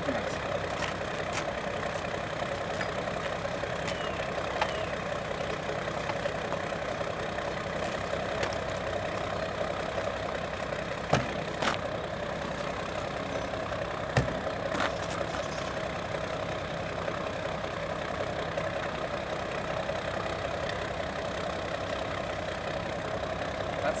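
A motor running steadily with an even hum, and a few sharp clicks or knocks partway through.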